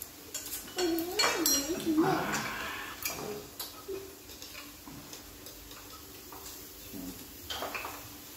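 Metal spoons and chopsticks clinking against the hot pot and dishes in a scatter of sharp clicks, with a voice briefly heard about a second in.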